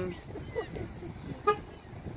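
A single short car horn toot about one and a half seconds in, over low outdoor background noise.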